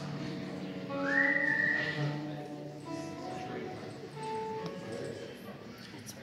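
A single loud human whistle from the audience about a second in, sliding up and then holding for under a second, over the murmur of audience voices.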